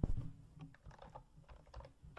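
Typing on a computer keyboard: a run of short, irregular keystroke clicks, the loudest just at the start.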